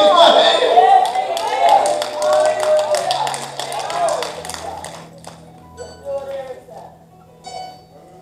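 Raised voices and hand clapping over sustained low keyboard chords. The voices and clapping fade out after about four seconds, leaving the held chords and a few faint taps.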